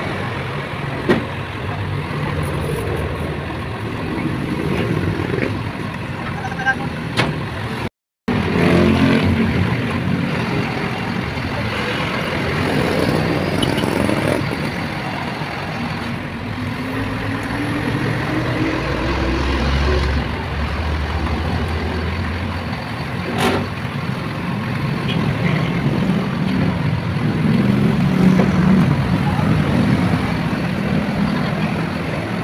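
Truck-mounted Soosan crane's engine running steadily under load while the hydraulic boom lifts a concrete utility pole, with a slow rising whine partway through and a few short knocks.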